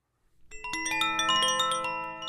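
Chimes struck in a quick cascade, starting about a quarter second in, with many bright bell-like notes at different pitches piling up and left ringing, then slowly fading.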